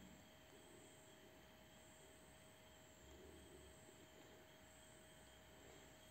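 Near silence: faint room tone and hiss with a thin steady hum.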